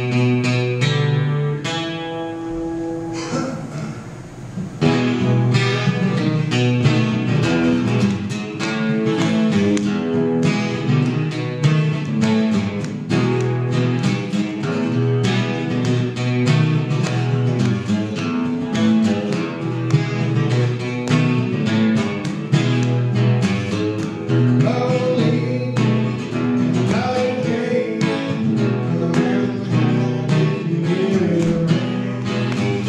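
Acoustic guitar played solo in a steady rhythm of chords. The sound thins out about three seconds in, then comes back in full with a strong stroke about four and a half seconds in.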